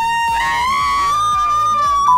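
A long, drawn-out high-pitched 'woo!' shout from a girl, swooping up at the start and then held for about two seconds with its pitch slowly creeping higher.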